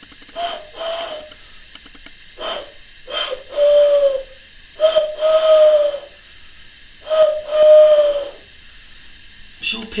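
Owl-like hoots blown across the gap between the thumbs of cupped hands. Five breathy hoots, several of them a short note followed by a longer, slightly falling one.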